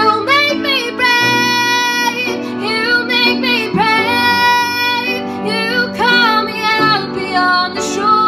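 A female vocalist sings a worship song over instrumental accompaniment, holding long notes and sliding between pitches without clear words.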